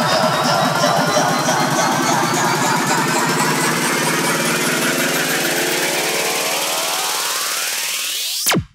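Progressive psytrance build-up: a dense electronic synth texture with the bass and kick dropped out, and a rising sweep that climbs in pitch over the last few seconds.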